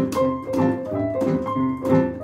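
Piano playing a boogie-woogie tune in stride style: the left hand alternates low bass notes with chords on a steady, repeating beat under a right-hand melody.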